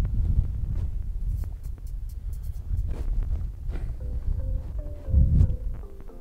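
Uneven low rumble of wind on the microphone, then background music of marimba-like mallet notes coming in about four seconds in.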